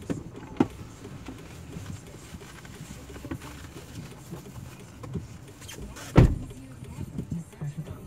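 Passengers settling into the back seat of a car: a small click about half a second in, then a car door shut with a heavy thump about six seconds in, over a low steady rumble.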